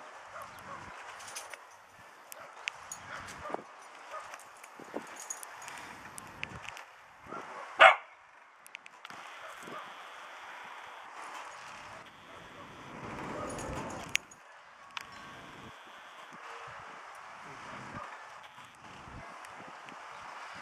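Dogs barking and yipping now and then, with one loud, short bark about eight seconds in.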